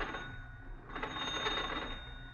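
Radio-drama sound effect of a telephone bell ringing as a call is placed to the operator, heard in two short stretches, the second starting about a second in.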